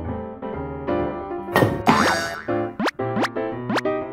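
Background music with evenly repeated notes, overlaid with comic sound effects: a swooping whoosh about one and a half seconds in, then three quick upward-sliding tones in a row near the end.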